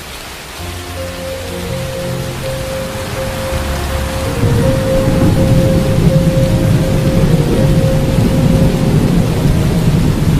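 Steady rain sound effect with a low rumble of thunder swelling about halfway through and holding, laid over slowed, reverb-heavy music in which one note repeats about twice a second.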